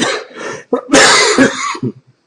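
A man coughing and clearing his throat, with the loudest cough about a second in.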